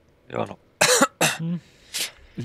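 A man coughing a few times in quick succession and clearing his throat.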